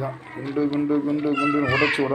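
A child's high-pitched voice talking, over a steady low hum.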